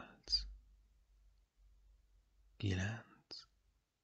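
Only speech: a soft voice slowly counting "seven", then after a pause "eight, nine", with a faint low rumble between the words.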